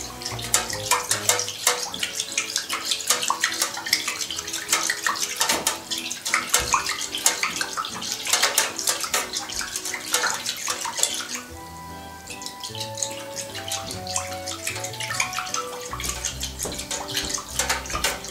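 Water in a clear plastic tub being stirred briskly with a thin metal rod: a rapid, continuous run of small splashes that eases off briefly about two-thirds of the way through. Background music plays underneath.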